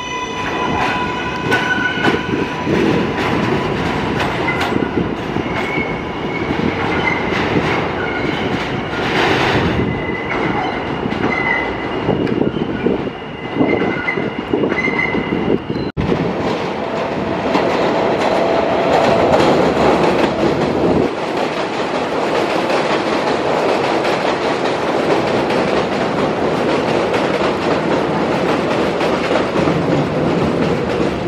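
New York subway L train pulling out of an elevated station, its electric traction motors giving a steady whine over the rumble of wheels on rail. About halfway through, the sound cuts to a second subway train coming along the elevated track and passing close by, its wheels clattering over the rail joints.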